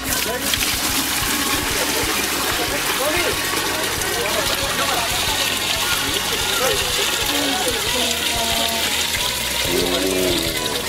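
Water draining out of a metal basin through the plughole just after the plug is pulled, a steady gushing and gurgling that starts suddenly at the beginning.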